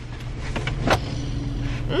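Car engine idling, a steady low rumble heard from inside the cabin, with a couple of light clicks.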